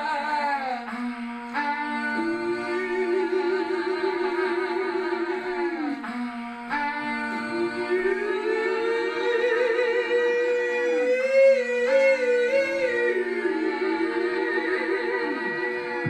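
A cappella live-looped vocals: held, hummed voice layers sustain a steady chord while a lead voice sings long, sliding notes over them, climbing higher in the middle.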